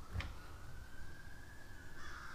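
Faint siren wailing, one thin tone rising slowly in pitch and then levelling off, with a light click just after the start.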